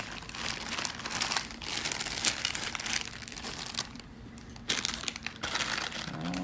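Plastic foil blind-bag wrapper of a Hot Wheels Mystery Model being crumpled and crinkled in the hands: a dense run of irregular crackles, easing off briefly around four seconds in.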